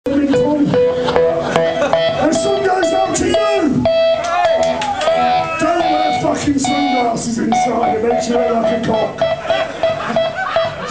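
Live Oi! punk band playing loud through amplified electric guitar with drums, with voices over it.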